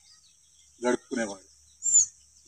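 A man speaking in short phrases with pauses between them, over a faint steady high outdoor hiss, and a single brief high chirp at the very end.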